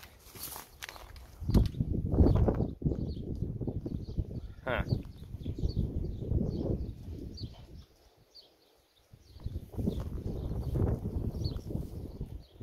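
Wind buffeting the microphone in loud, irregular gusts, with a short lull about eight seconds in.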